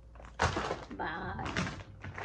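A thump about half a second in as a package is handled, followed by the rustle of plastic packaging, with faint voice sounds underneath.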